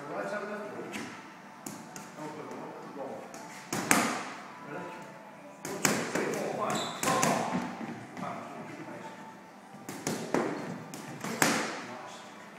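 Gloved punches landing on focus mitts: sharp slaps, single or in quick pairs, in irregular groups with pauses between them.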